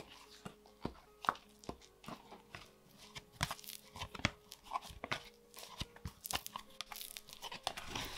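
Plastic dough scraper working sticky bread dough in a glass bowl, with irregular soft scrapes, squelches and light clicks against the glass as the dough is mixed until no dry flour remains.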